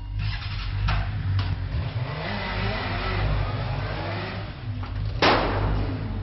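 Motorcycle engine running and revving, its pitch rising and falling, with a sharp bang a little after five seconds in.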